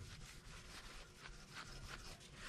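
Faint rubbing of a shop rag working metal polish over a chrome bumper, in repeated back-and-forth strokes.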